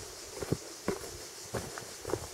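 Footsteps on a rocky dirt trail with a handful of sharp, irregular knocks of a walking stick struck on the ground and stones, tapped to warn snakes away.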